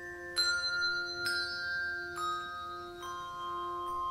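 Handbell ensemble playing a slow melody: a new bell struck about once a second, each note ringing on over the held notes beneath it.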